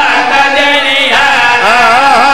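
A man's voice chanting recited verses through a microphone and loudspeaker, in long held notes that waver and slide in pitch.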